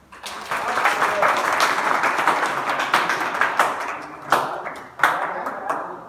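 A group of people applauding: many hand claps in a dense burst that begins just after the start and gradually thins out, ending with a few separate loud claps.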